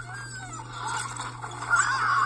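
Film soundtrack playing from a laptop's speakers: music with voices crying out in gliding, wavering pitches that grow louder near the end, over a steady low hum.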